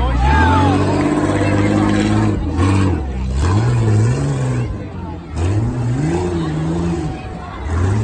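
Jeep Grand Cherokee WJ engines revving hard as the trucks launch and race over dirt jumps, the pitch climbing at the start and then rising and dipping with the throttle. Crowd voices and shouting run over the engines.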